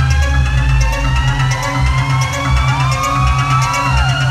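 Loud electronic dance music from a live DJ set over a club sound system: a pulsing bass under slowly rising synth tones, with a fast high ticking on top.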